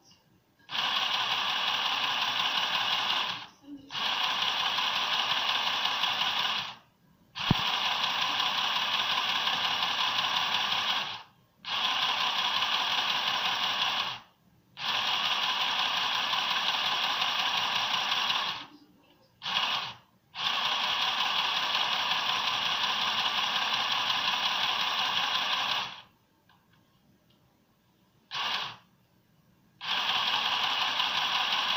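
Irit HOME ARP-01 mini sewing machine stitching in repeated runs of a few seconds, about eight in all, each starting and stopping abruptly as its on/off pedal is pressed and released. The pedal has no speed control, so every run is at the same steady pace. There is a sharp click about seven seconds in.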